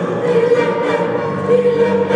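Mixed choir of teenage boys and girls singing, holding sustained notes.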